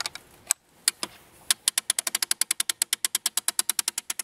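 PSE TAC 15 crossbow's crank cocking device being wound by hand, its ratchet clicking. There are a few scattered clicks at first, then from about a second and a half in a fast, steady run of about ten clicks a second as the string is drawn back.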